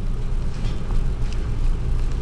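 Pen writing on paper, faint scratching strokes over a steady low rumble.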